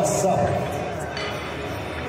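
Voices talking in a large hall. The talk fades to a quieter murmur of room noise through the middle.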